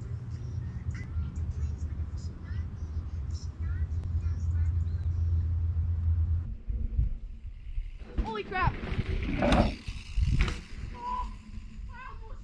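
A steady low rumble that cuts off suddenly about six and a half seconds in, followed by people's voices calling out, with a couple of loud shouts near the end.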